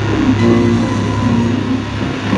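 Live electronic industrial breaks music: a deep, steady bass drone with synth notes stepping above it, played through a club PA.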